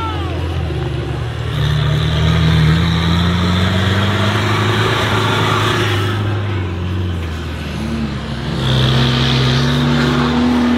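Engine of a modified off-road 4x4 pickup driving over dirt, its revs climbing, easing off around the middle and rising again near the end.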